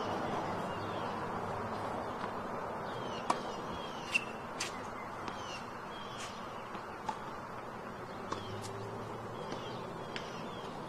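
Birds chirping outdoors, many short falling calls, over a steady background hum, with a few sharp knocks scattered through.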